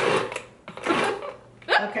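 Cuisinart food processor motor running on a pulse, chopping frozen butter and shortening into flour for pie crust, and cutting off a fraction of a second in.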